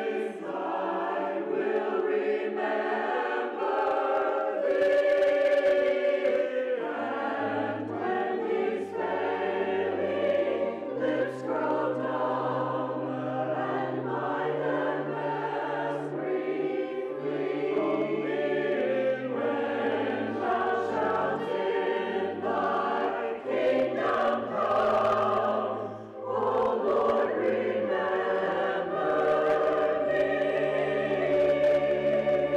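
A mixed church choir of men's and women's voices sings an anthem in parts. Low held accompaniment notes come in underneath about seven seconds in.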